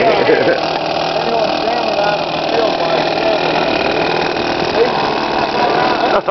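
R/C Corsair model airplane's fuel engine running steadily at the flight line.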